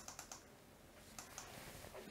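Faint clicking of computer keyboard keys, a scattering of light taps.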